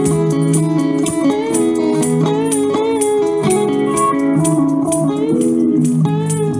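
Street busker's amplified guitar playing a melody with sliding, bending notes over a steady percussion beat of about four hits a second.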